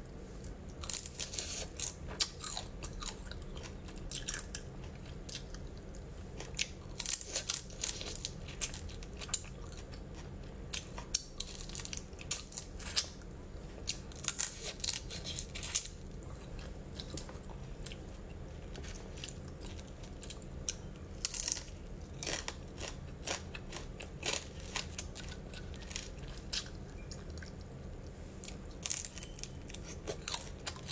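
Biting and chewing spicy mantis shrimp, the shells crunching and cracking in irregular clusters of crisp clicks.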